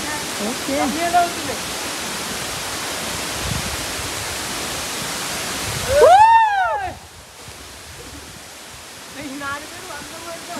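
Steady rushing roar of the Agaya Gangai waterfall in heavy flow. About six seconds in, a person lets out a loud whoop that rises and falls in pitch. After it the water noise is fainter for the last few seconds.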